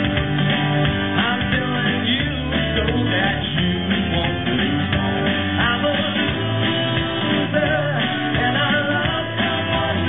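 Live rock band playing a song: acoustic and electric guitars, bass and drums running steadily together.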